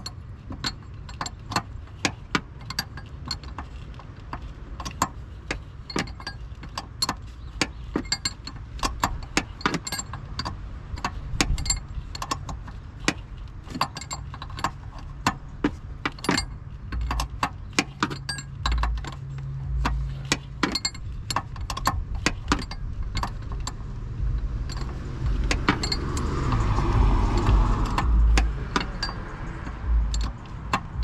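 Quick metallic clicks and clinks, a few a second, of a hand tool tightening the high-pressure line fitting on a newly installed hydroboost brake booster. Vehicle noise swells and fades near the end.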